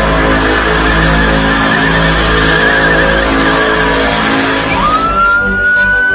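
Pickup truck doing a burnout, its engine held at high revs while the tyres screech through a cloud of smoke, loud and steady. Near the end a squeal rises in pitch and holds.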